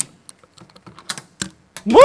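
Combination padlock dial being turned, giving a series of small irregular clicks, with a sharp click at the start and louder clicks past the middle. A loud voice breaks in right at the end.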